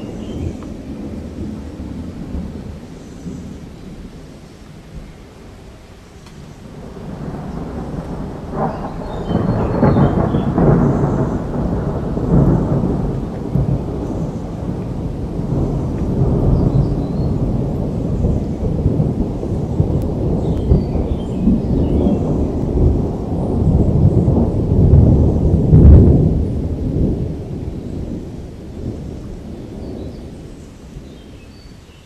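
Rolling thunder: a long, deep rumble that builds about seven seconds in, swells twice and dies away near the end.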